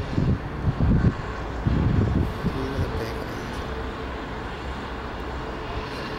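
Wind buffeting the microphone in irregular low gusts for the first two seconds or so, then settling into a steady low outdoor rumble with a faint hum.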